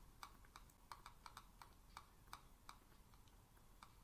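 Faint, irregular clicking of computer input, a few clicks a second, as program code is scrolled through in an editor.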